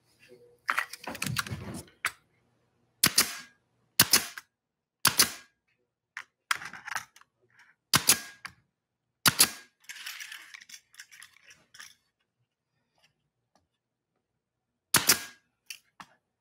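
Pneumatic nailer firing pins into a small plywood box: a series of about six sharp shots a second or so apart, with a longer gap before the last one. Handling noise comes between the shots.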